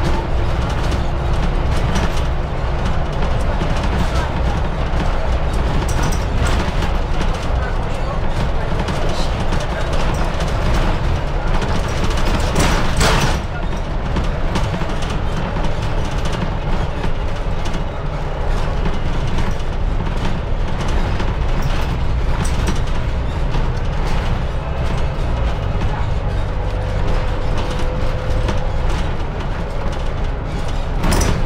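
Mercedes-Benz Citaro city bus under way, heard from inside the cabin: a steady diesel engine drone with road noise, and a brief louder clatter about halfway through.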